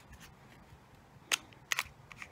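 Three short, sharp plastic clicks, one a little past halfway and a quick pair near the end, from a small clear plastic jewellery case being handled and snapped shut.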